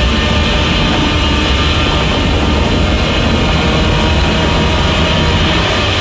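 Loud movie-trailer sound design: a deep, steady rumble with faint higher tones layered over it, holding at the same level without a break.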